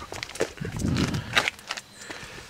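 Footsteps on asphalt pavement: a few short scuffs and clicks, with a softer, longer scuff in the middle.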